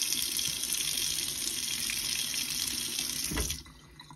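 Tap water running in a steady stream onto a gloved hand and into a sink, then shut off about three and a half seconds in.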